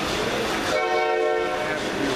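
A train horn sounding one steady blast of about a second, starting a little under a second in, over the background noise of a busy exhibition hall.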